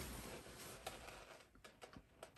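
Faint handling noise from a leather bag strap and its metal hardware: a soft rustle that fades, then a few light clicks near the end.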